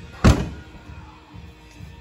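A single dull thump about a quarter second in, as of a hand or phone bumping the cylinder head while it is handled.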